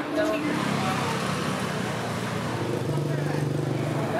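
Busy street ambience: indistinct voices and motor-vehicle traffic, with a steady low engine hum coming in near the end.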